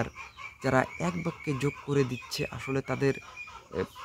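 Chickens clucking, mixed with short bursts of a man's voice.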